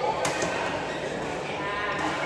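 A badminton racket strikes the shuttlecock once, a sharp crack about a quarter second in, over the steady chatter of players' voices in the hall.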